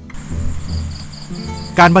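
Crickets chirping: a steady high trill with a quick, evenly pulsing chirp over it.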